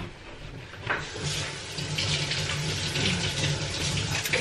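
Kitchen tap running into a sink: a steady rush of water that starts about a second in, just after a click.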